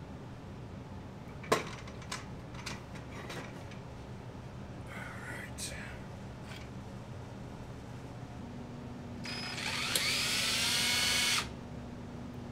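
Clicks and knocks of tools and a plastic drill-bit case being handled, the loudest a sharp knock about a second and a half in. Near the end a cordless drill runs for about two seconds, rising in pitch as it spins up into the plastic prop shell, then stops suddenly.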